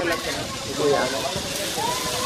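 Brief bits of voice over a steady hiss, with a rising call starting near the end.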